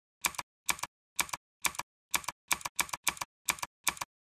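Computer keyboard typing: about ten separate keystrokes, each a quick double click, at two to three a second with silence between.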